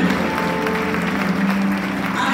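A live church band holding a sustained chord while the congregation claps and applauds.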